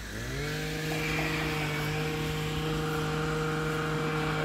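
Two-stroke chainsaw pruning trees: its engine dips at the start, revs back up within about half a second and then runs steadily at high revs.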